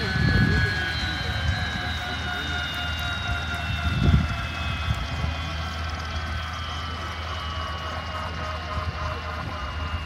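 Bell UH-1D Huey winding down on the ground after shutdown: its turbine whine falls slowly and steadily in pitch while the slowing main rotor keeps up a low rumble. Two brief low whooshes come at the start and about four seconds in.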